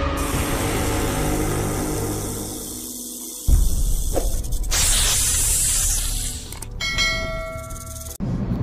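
Animated intro sound effects: a low rumble that fades, a sudden boom about three and a half seconds in, a loud hissing blast, then a ringing bell-like chime near the end.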